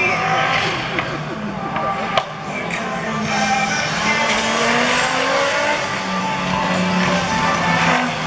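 Audi quattro rally car's engine running on track under acceleration, its pitch rising as it revs up between about three and five seconds in, with a single sharp bang about two seconds in.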